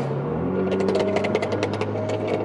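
Car engine droning, its pitch dropping about a third of a second in as the throttle is lifted. Then comes a rapid, irregular crackle of exhaust pops from the tuned (BM3, full bolt-on) BMW 340i's turbocharged straight-six on overrun, heard from inside a following car.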